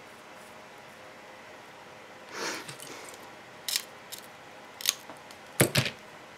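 Small mosaic tools and glass pieces being handled on a work table: a soft rustle, then a handful of sharp clicks and snaps in the second half, the last two close together.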